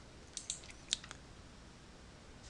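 A few faint computer mouse clicks, about half a second and about a second in, over quiet room tone.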